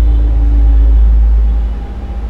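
Steady, loud low rumble with no clear rhythm or pitch, like distant traffic or machinery, and a faint steady hum in the first second.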